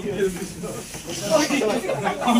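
Indistinct overlapping voices of a small group talking and laughing in a room.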